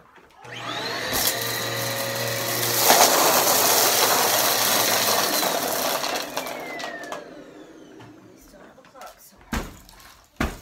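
Eureka bagless upright vacuum cleaner switched on: the motor spins up about half a second in and runs loud for several seconds, then fades with a falling whine as it winds down. A few sharp knocks near the end.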